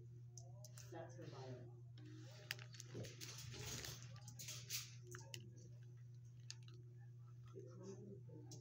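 A dog sniffing around a fleece blanket for small scattered treats, with a few sharp clicks of chewing and a stretch of snuffling in the middle, over a steady low hum and faint background voices.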